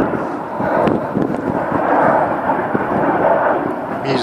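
Avro Vulcan XH558's four Rolls-Royce Olympus turbojets giving a loud, steady rumble as the delta-wing bomber flies past.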